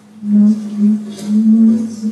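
A loud low drone near one pitch, swelling and easing in three or four waves over a fainter steady hum of the same pitch, part of an experimental music performance.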